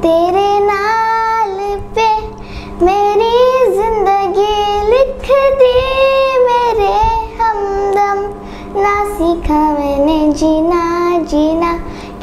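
A young girl sings a song solo and unaccompanied into a microphone, holding and bending long notes in phrases with short breath pauses between them.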